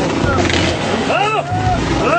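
Voices talking and calling out over a steady low drone of motorcycle engines running.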